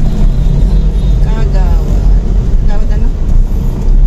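Steady low rumble of a car's engine and road noise heard inside the cabin, with quiet voices over it.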